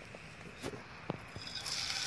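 A fish fillet dropped into hot oil in a frying pan starts sizzling near the end, a sudden steady hiss; before it, a few faint knocks.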